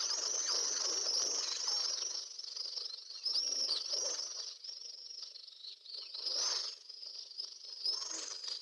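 Many small birds chirping, short arched calls overlapping densely at first and thinning out after about two seconds, with a few louder chirps later on.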